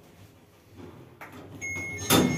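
Mogilevliftmash passenger lift (1 m/s, 630 kg) arriving at a floor: a rising mechanical rumble and a click as the car stops. About one and a half seconds in, a steady electronic arrival beep starts, the signal that the car has levelled and the doors are about to open.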